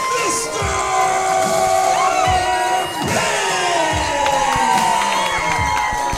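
Crowd cheering and shouting over wrestling entrance music, with long held tones from the music running under the noise of the crowd.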